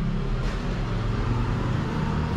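Road traffic: a motor vehicle's engine running steadily, a low hum over road noise.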